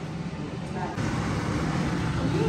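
Indistinct voices over a steady low hum, louder from about a second in.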